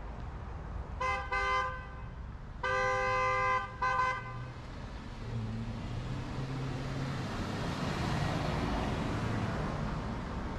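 A car horn honking in several blasts: a short double honk about a second in, a longer honk near three seconds and a short one right after. Road traffic then builds as a vehicle approaches and passes, loudest near the end.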